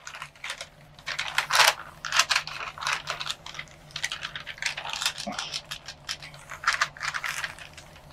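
Paper rustling and rubbing as sheets are pressed and handled on a gel printing plate, in a run of short scratchy strokes over a faint steady hum.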